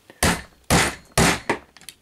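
Small hammer tapping the handle of a screwdriver whose tip is set on the knee pin of a die-cast toy figure, three sharp taps about half a second apart. The taps drive a loose knee pin back in to tighten the joint.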